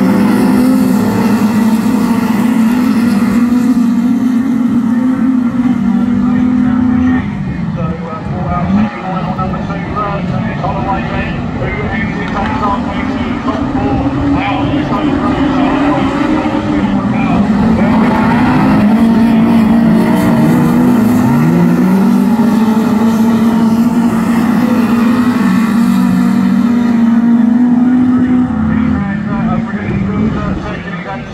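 Several autograss race cars racing on a dirt oval, their engines held at high revs in one loud, steady note. The note drops away about seven seconds in, comes back as the cars accelerate, and swoops down and up again around two-thirds of the way through as they lift off and get back on the throttle.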